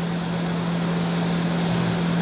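Air conditioning running: a steady rush of air with a constant low hum underneath.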